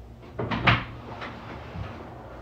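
A door or cupboard being handled nearby: a short run of knocks and clatters, the loudest about two-thirds of a second in, then a couple of softer knocks.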